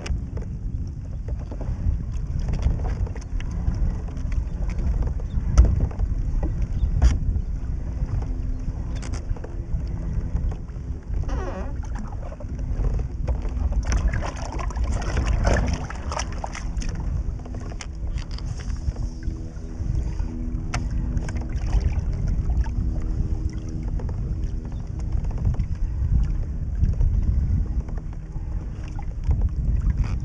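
Wind buffeting the microphone of a kayak-mounted camera, with low rumble that swells and eases, small water splashes and knocks against the kayak, and a faint steady hum underneath for most of the time.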